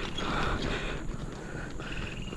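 Bicycle creaking and clicking mechanically while being pedalled uphill.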